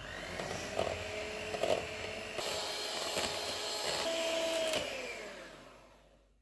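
Electric hand mixer whipping cream and condensed milk to soft peaks: the motor whines steadily, with a few clicks. About five seconds in it is switched off, and the pitch falls as it winds down to stop.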